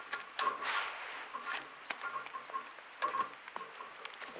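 A deer fawn nosing and rubbing against a trail camera right at the microphone: an irregular run of scratchy rubs and light knocks of fur and muzzle on the camera housing.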